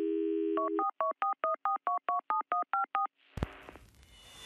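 A telephone dial tone, then a quick run of about a dozen touch-tone keypad beeps, about five a second, as a number is dialled. A short thud and hiss follow near the end.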